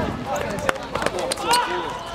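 Boys' voices shouting and calling during a small-sided football attack, with a sharp knock of the ball being kicked on the hard court about two-thirds of a second in.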